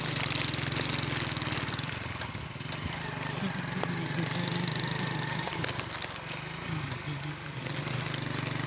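Small engine of a moving vehicle running steadily, with road and wind noise over it; its pitch shifts slightly about halfway through.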